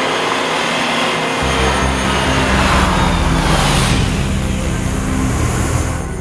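A loud rushing, rumbling swell under a suspense score, with a deep rumble coming in about a second and a half in: the kind of dramatic whoosh-and-rumble effect laid into a TV thriller's soundtrack.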